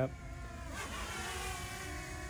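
DJI Mini 2 quadcopter's propellers buzzing as the drone flies in close, a whine of many stacked tones that comes up under a second in.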